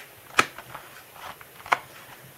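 Fingers pressing potting soil around a seedling in a thin plastic cup: two sharp clicks about a second and a half apart, with a few faint ticks and rustles between.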